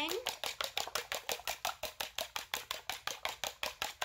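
Six raw eggs being beaten by hand in a bowl: a quick, steady clicking of the utensil against the bowl at about seven strokes a second.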